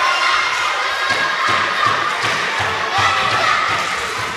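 Children shouting and cheering, many voices at once, filling a sports hall.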